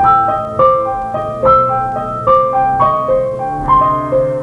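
Solo piano-sounding keyboard music: a repeating broken-chord figure of struck notes that ring and fade, about three notes a second.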